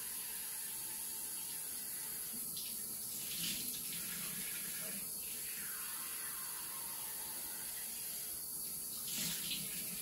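Bathroom tap running steadily into the sink while someone washes their face, with louder splashes of water from rinsing twice, a few seconds in and near the end.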